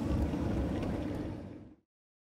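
Roller coaster ride noise from an on-board camera: a steady low rumble from the train on the track, with wind on the microphone, fading away and cutting to silence near the end.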